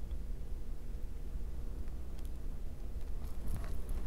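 Steady low hum of a quiet room with a few faint light clicks of jewelry pliers and small chain links being handled, two or three of them in the second half.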